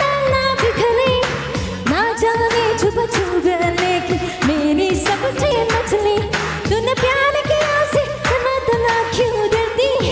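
A woman singing a Hindi Bollywood-style song into a microphone over music with a steady dance beat, the melody held in long, gliding notes.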